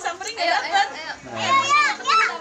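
Children's voices talking and calling over one another, with one loud, high child's voice about a second and a half in.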